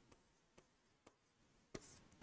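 Near silence, with faint marker-on-whiteboard writing and a soft click near the end.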